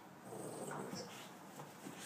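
A Boston terrier making excited vocal sounds as it jumps up. The sounds are loudest in the first second.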